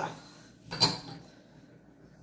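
A single short knock of a spoon against a mixing bowl, about three quarters of a second in.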